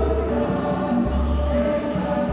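Mixed African choir singing a traditional song in many-voiced harmony, with a deep low sound coming and going underneath.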